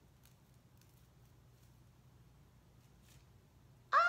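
Near silence: room tone with a few faint soft rustles. A woman's loud, excited vocal exclamation breaks in right at the end.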